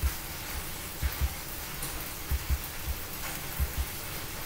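Steady hiss from the recording's background noise. Over it come soft low thumps, several in pairs, about one a second, from a computer mouse being worked on the desk while the list is scrolled.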